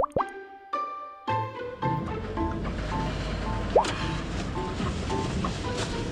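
Editing sound effects, a few quick bubbly plops with short chime-like tones, then a light background music cue of repeating short notes over a steady low noise bed.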